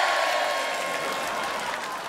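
Crowd applause swelling in just after a punchline and slowly fading.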